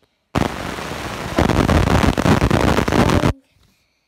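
Loud scraping, rustling handling noise as the phone is moved and its microphone rubs against fabric or fingers. It starts suddenly, gets louder about halfway through, and cuts off suddenly just after three seconds in.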